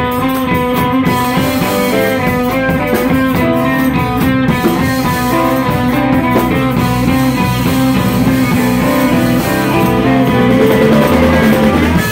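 Live blues band playing an instrumental passage, electric guitar out front over a drum kit, at a steady loud level.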